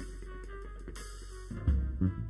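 Live jazz band playing, with trumpet, piano, guitar, electric bass and drum kit. The first part is softer with held notes, and about one and a half seconds in the bass and drums come in loud.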